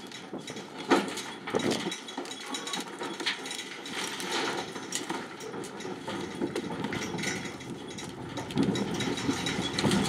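Cattle unloading from a livestock semi-trailer: hooves knock and clatter on the trailer's metal floor and ramp over the steady idle of the truck's engine. One sharp knock comes about a second in, and the hoof knocks grow louder and busier near the end.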